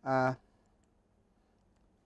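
A man's brief hesitant 'uh', then near silence with a few faint clicks.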